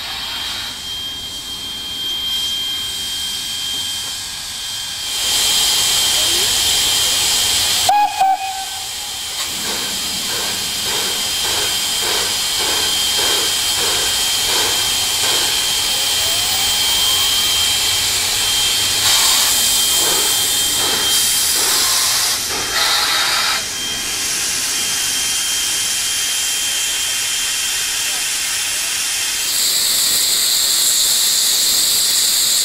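Steam locomotive standing and hissing steam, with a slow rhythmic pulsing of about one and a half beats a second for several seconds midway. There is a sudden break with a click about a quarter of the way in.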